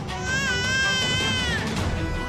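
An infant crying in one long wavering wail, over background music.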